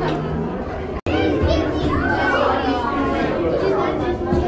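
Crowd of visitors chattering in a large indoor hall, with children's voices among them. The sound drops out for an instant about a second in.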